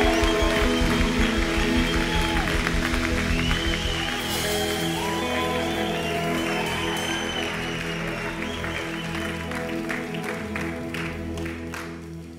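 Live band playing a sustained keyboard chord pad, with a steady low beat that drops out about four seconds in, under audience applause. The clapping thins out and stops near the end while the chords keep ringing.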